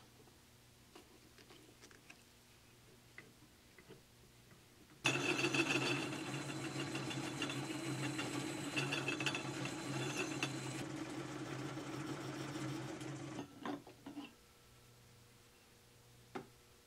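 Homemade Gingery metal lathe, belt-driven, running for about eight seconds from about five seconds in while a tool bit turns a crown onto the rim of a pulley. Before it come a few faint clicks as the tool is set, and a couple of clicks follow after it stops.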